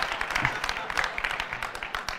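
Large audience in a hall applauding, the clapping dying down over the two seconds.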